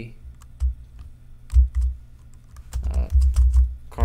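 Typing on a computer keyboard: irregular key clicks, some with a dull low thud, entering a chart title.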